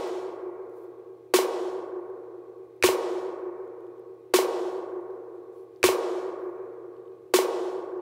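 Snare drum hits, about one every one and a half seconds, heard only through an emulated spring reverb (Audiothing Outer Space plugin, wet only, treble turned down). Each hit leaves a long ringing tail that fades away just as the next one lands.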